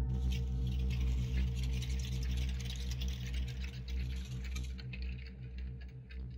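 Film soundtrack: a low, steady droning tone with a rushing noise over it that fades away after about five seconds.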